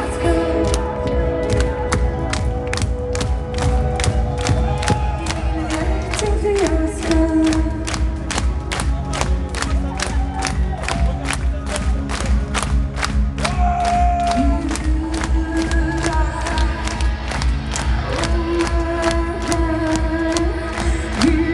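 Metal band playing live at concert volume: a steady, evenly spaced drum beat, with held vocal notes over it that slide down about six seconds in and up about fourteen seconds in. Crowd noise mixes in.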